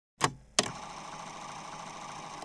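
Two sharp clicks, about half a second apart near the start, followed by a steady hiss: an edited intro sound effect.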